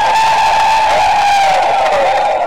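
A rally crowd cheering and shouting in response to a speech, with one long held shout over the noise that falls slightly near the end.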